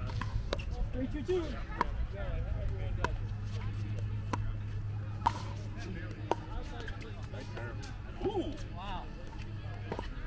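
Pickleball paddles striking a plastic ball in a rally: six sharp pops roughly a second apart, ending about six seconds in. A steady low hum lies underneath.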